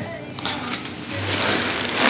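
Clothing rubbing against a clip-on lapel microphone as hands work on the neck: a scratchy rustle with small crackles that grows louder through the second half.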